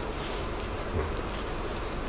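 Room tone: a steady low hum with a faint hiss, in a pause between speakers.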